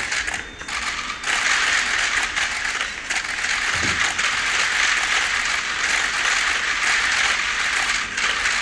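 Many press cameras' shutters firing in rapid, overlapping bursts: a dense clatter of clicks that thins briefly about a second in.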